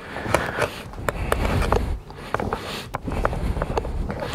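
Rustling and crackling of a stiff roll-top dry bag's fabric and a pillow as the pillow is pushed into the bag by hand, with many short, irregular crackles.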